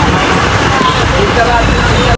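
Busy crowd ambience: many people talking at once over a steady low rumble.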